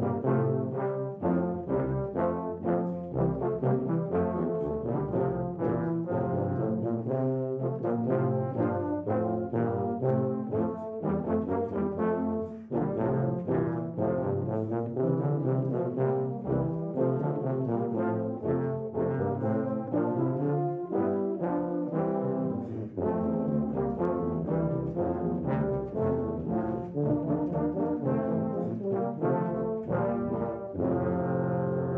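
A low-brass ensemble of tubas and euphoniums playing a tune together in harmony, with deep sustained notes moving in a steady rhythm.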